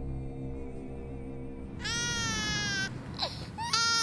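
Low sustained music, then an infant crying: one long wail falling in pitch about two seconds in, and a shorter cry near the end.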